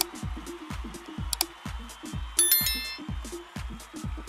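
Electronic music with a fast, steady kick-drum beat, overlaid with subscribe-animation sound effects: sharp mouse clicks at the start and about a second and a half in, then a short, bright notification-bell chime around two and a half seconds.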